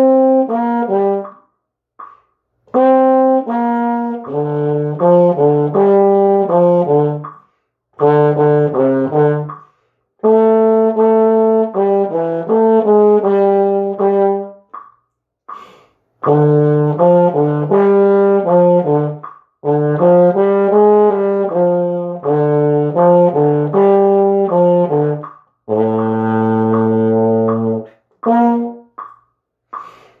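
Euphonium-type valved brass horn playing the trombone part of a band piece at 80 BPM. It plays phrases of short, separate and repeated notes with brief rests between them, then a long held note a little before the end, followed by a few short notes.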